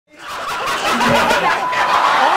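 Hearty laughter, fading in from silence over the first half second.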